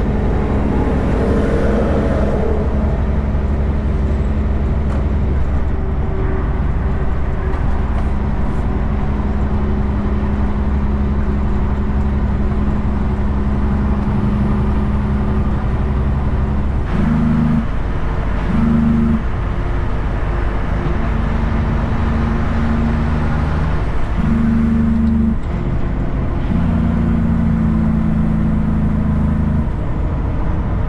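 Kenworth K200 cabover's Cummins diesel engine running at cruise, heard inside the cab over tyre and road noise. In the second half the engine note steps and changes several times.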